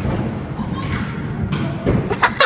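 A dull thud about two seconds in, over a steady low rumble.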